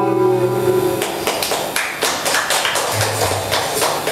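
A live rock band's final chord on electric guitars and bass rings for about a second and then stops. It is followed by scattered sharp taps and clicks and a low amplifier hum.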